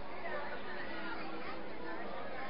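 Indistinct chatter of several voices at a steady level, no single voice standing out.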